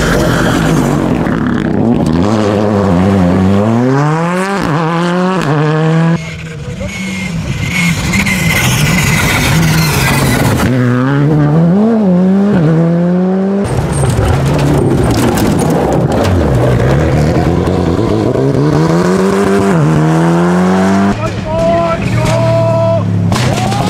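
Rally cars at full race pace passing one after another, engines revving up and dropping back repeatedly through gear changes, in several short clips edited together, each ending in a sudden cut.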